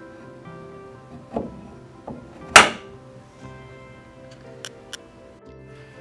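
Wooden dowel leg dropped into its wooden collar, its neodymium magnet snapping onto the steel washer at the bottom of the hole with one loud knock about two and a half seconds in, after a couple of softer knocks. Background music runs throughout.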